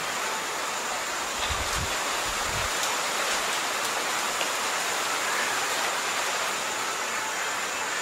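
Steady hiss of background noise with a faint thin high whine, and a few soft low thumps about two seconds in.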